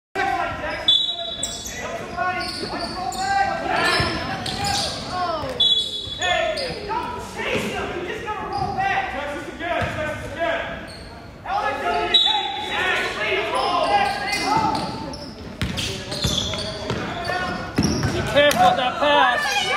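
A basketball being bounced on a hardwood gym floor, with players' and spectators' voices echoing in a large gym.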